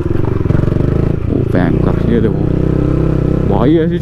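Yamaha MT-15's single-cylinder engine running steadily under load as the motorcycle climbs a steep, rough track.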